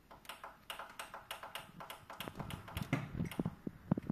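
A rapid run of light clicks and taps, then, from about halfway, irregular low knocks and rubbing, with one sharper knock near the end, as of a handheld phone being moved and handled.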